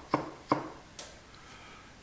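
Three light clicks of the spring-loaded wooden relief-valve arm and wire trip wire being handled, the loudest about half a second in.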